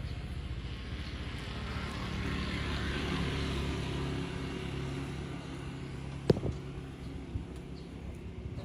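A steady low engine hum, with a swell of noise that rises and fades in the middle, and a single sharp click about six seconds in.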